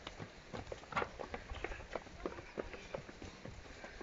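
Several children running across a wooden footbridge: a string of irregular footfalls knocking on the boards.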